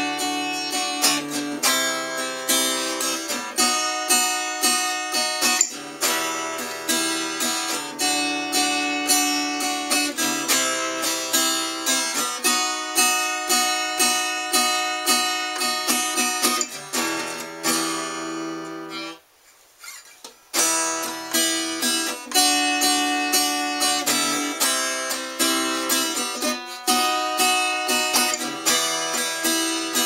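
Stagg acoustic guitar strummed in a steady chord rhythm, with downstrokes across the strings made with the fingers and lighter upstrokes made with the thumb. The strumming stops for about a second and a half around two-thirds of the way through, then picks up again.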